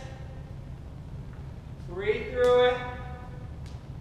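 A person's held, pitched vocal sound, about a second long and loud, rising at its start about two seconds in, over a steady low hum.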